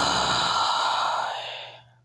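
A long, heavy sigh: one breathy exhalation that fades out shortly before the end.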